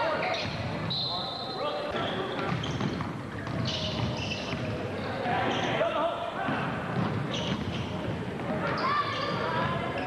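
Basketball dribbling on a hardwood gym floor during live play, with voices of players and spectators calling out throughout, all ringing in a large gym.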